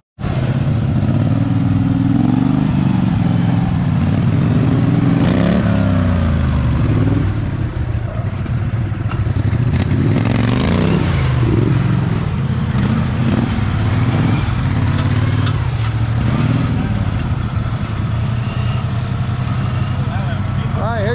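Small engine of a modified off-road lawn tractor revving up and down under load as it climbs over rocks, its pitch rising and falling repeatedly.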